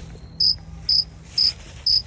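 A cricket chirping: four short, evenly spaced high chirps, about two a second.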